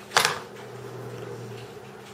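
A single sharp click as the charger cable is pulled out of the iPhone, followed by a faint low hum lasting about a second.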